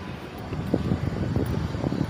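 Wind buffeting the microphone as a low, uneven rumble, with a few soft thumps in the second half.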